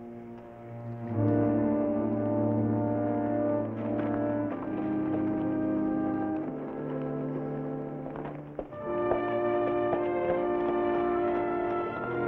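Orchestral music with brass and strings playing sustained chords, swelling about a second in and moving to a new chord near nine seconds.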